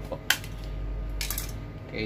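Plastic casing of a small battery-powered LED light being handled and opened: a sharp click, then a short scraping rasp about a second later.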